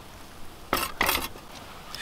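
Two short clattering clinks a third of a second apart as an ice-fishing tip-up's frame and metal shaft are set down on the ice.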